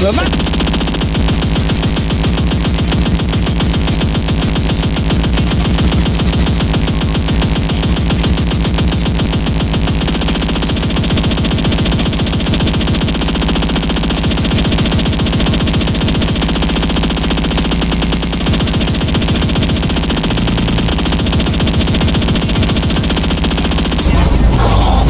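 Oldschool speedcore track: an unbroken stream of extremely fast, distorted kick drums over a steady bass drone, loud and without a break.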